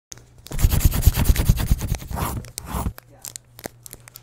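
Intro sound effect of rapid scratchy strokes like a pencil scribbling on paper, with low thuds underneath. The strokes stop at about three seconds, leaving a few scattered clicks.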